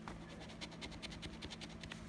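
A gold coin scratching the latex coating off a lottery scratch-off ticket in quick short strokes, about eight a second, from about half a second in until near the end.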